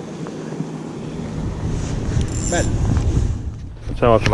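Wind buffeting the camera microphone, growing stronger about a second in, over a steady low hum.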